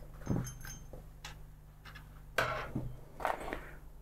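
Desk handling sounds: small plastic and metal model parts and a clear plastic blister tray clicking and clattering as they are set down, followed by two louder rustles of paper as the magazine is opened.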